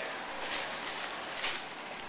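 Clear plastic flower sleeve around a bunch of waxflower crinkling and rustling as the bunch is handled and set on a digital scale, with a couple of louder crackles.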